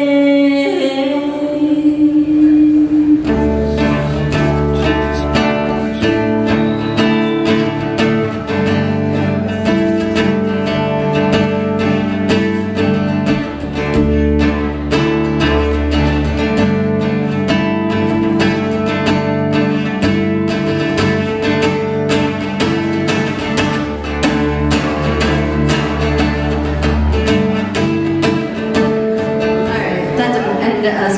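Live song: a sung note held for the first three seconds or so, then acoustic guitars strumming chords steadily, with low bass notes under them, as an instrumental passage without vocals.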